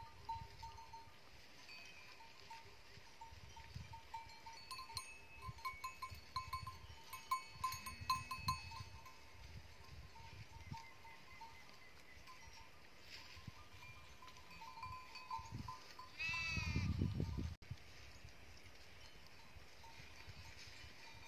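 Faint bleating of a grazing flock of sheep and goats, with small bells clinking, busiest in the middle. About three-quarters of the way through comes one louder, falling-pitched call over a brief low rumble.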